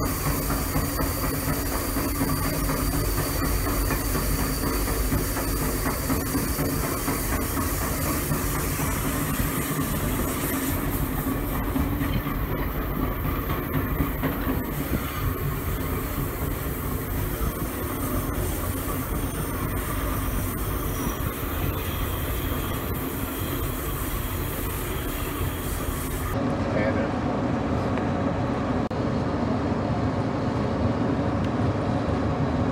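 Passenger train in motion: a steady rumble of steel wheels running on the rails. About 26 seconds in, the sound changes abruptly and becomes more muffled.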